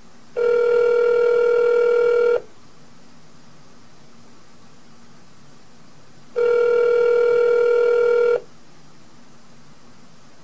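Ringback tone of an outgoing cell phone call, heard through the calling phone's speaker: two steady rings, each about two seconds long, with a four-second pause between them. The call to the foil-wrapped phone is ringing unanswered.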